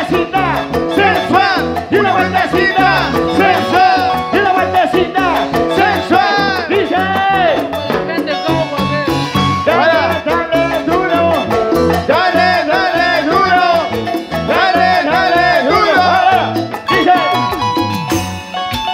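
Live band playing an upbeat instrumental huayno passage. A bright lead melody with sliding, bending notes runs over a bass line and keyboard, with a steady, quick percussion beat throughout.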